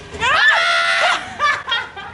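A woman's high-pitched shriek of laughter, rising and then held for about half a second, followed by a few short bursts of laughter.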